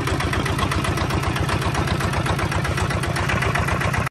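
Kubota RT155 single-cylinder diesel engine on a walk-behind tiller, running steadily with a rapid, even chug.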